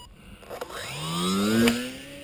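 Small electric motor and propeller of an EPP foam RC plane powering up, its whine rising in pitch for about a second and then holding steady as the plane climbs away; a sharp click near the end.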